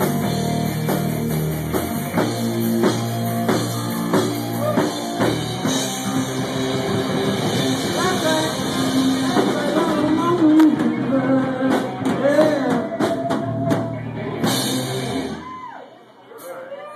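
Live blues-rock trio playing: electric guitar through Marshall amps, bass guitar and drum kit. The lead guitar bends notes in the second half, and the band stops on a final hit about half a second before the end.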